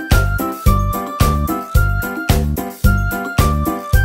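Background music: an upbeat track with a steady beat of just under two beats a second and a high, chiming, bell-like melody.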